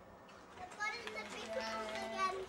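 A young child's high-pitched voice starting about half a second in, with some drawn-out, sing-song sounds rather than clear words.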